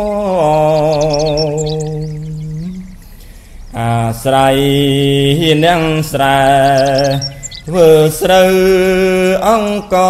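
Khmer smot, Buddhist chanted poetry, sung solo by a monk's male voice: long held notes with a wide, slow vibrato and gliding melodic turns. The voice fades on a falling phrase about three seconds in, then takes up a new phrase a second later.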